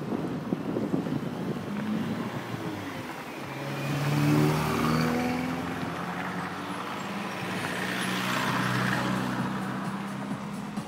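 A slow-moving car's engine and road noise, heard from inside the car. A steady low engine hum sets in about three to four seconds in and holds.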